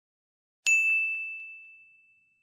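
A single bright, bell-like ding chime struck about two-thirds of a second in, ringing on one clear tone and fading away over about a second and a half.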